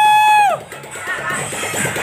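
A loud whoop of "woo!", held on one pitch, ending about half a second in; after it, music with a drum beat plays on.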